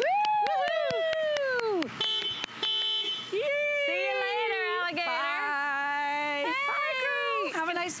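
Women whooping and cheering in long, falling-pitch cries of celebration as a jump-started car comes to life. Two short horn-like beeps come about two seconds in.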